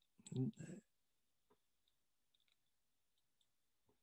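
A brief non-word vocal noise, like a throat-clear, near the start. It is followed by near silence with a few faint clicks while the lecture slide is advanced.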